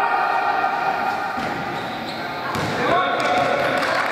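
Basketball bouncing on an indoor court during play, with girls' long shouts, one at the start and another about three seconds in.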